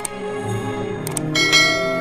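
Intro jingle of bell-like chimes: many tones ringing and sustained together, with a pair of sharp clicks about a second in and a brighter swell of high chimes just after.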